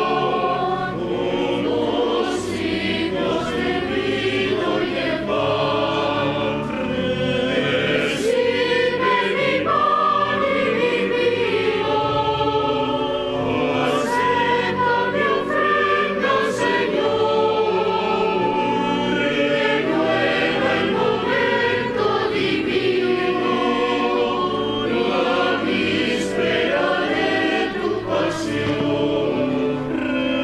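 Church choir singing a hymn in several voices, continuous and unbroken, as the offertory chant of a Catholic Mass.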